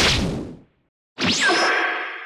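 Two edited-in whoosh sound effects: a sudden rushing hit at the start that dies away within about half a second, then about a second in a second whoosh with a falling, whistle-like sweep that rings out, marking a sudden arrival.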